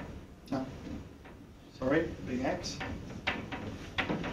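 Marker pen writing on a whiteboard in a few short scraping strokes, with a brief mumbled voice about two seconds in.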